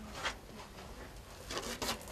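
Faint scraping and rubbing as fresh flatbread is handled on a wooden board, with a couple of short scrapes near the end.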